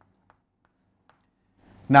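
Chalk on a chalkboard, a few faint light taps as a short answer is written. A man starts speaking just before the end.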